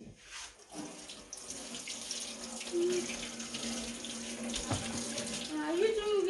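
Kitchen mixer tap turned on about a second in, water running steadily into a stainless steel sink as tomatoes are rinsed under the stream.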